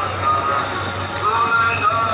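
Busy crowded street: many voices talking at once, mixed with music from loudspeakers and traffic, over a steady low hum.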